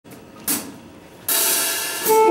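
Drum kit cymbals: a short hi-hat-like tap about half a second in, then a cymbal struck sharply just past a second in and left ringing.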